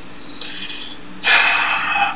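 A person breathing close to a microphone: a faint short breath, then just past halfway a loud, heavy exhale lasting well under a second, over a steady low electrical hum.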